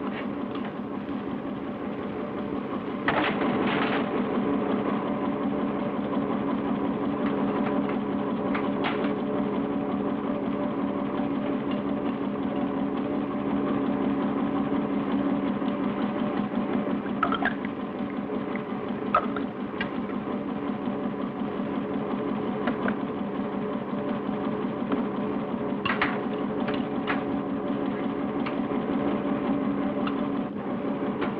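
A small motor-driven machine running steadily with a rapid, even whir, getting louder about three seconds in, with a few short clicks and knocks scattered through it.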